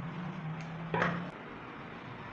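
Scissors closing through doubled stretch-net fabric: one sharp snip about a second in, over a low steady hum that stops shortly after.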